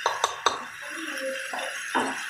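Plastic spoon knocking against the rim of a metal pot three times in quick succession at the start and once more near the end, over a steady hiss of meat frying in the pot.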